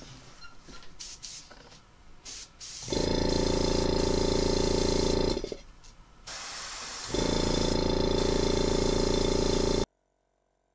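Small airbrush-kit compressor running with a steady hum, with air hissing through the airbrush as it sprays a base coat onto a crankbait. It comes in two runs of a few seconds each, with a short, quieter lull between them, and cuts off suddenly near the end. Light handling sounds come before the first run.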